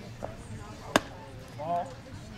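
A single sharp crack of a fastpitch softball bat hitting the pitched ball, about a second in. A brief voice calls out near the end.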